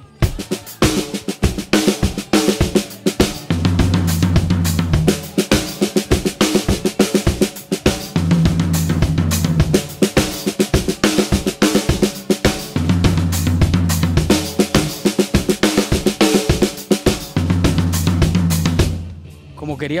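Drum kit playing a fast sixteenth-note hard-rock groove, the hands on every sixteenth and the bass drum on the quarters, with the accents moved around hi-hat, snare, floor tom and an improvised stack of two cracked cymbals. The playing stops about a second before the end.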